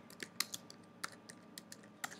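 Faint, irregular keystrokes on a computer keyboard: a short run of separate key clicks as a search phrase is typed.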